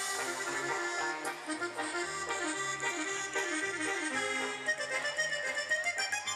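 A live regional Mexican dance band plays an upbeat number. An accordion leads with quick runs of notes over a pulsing bass line.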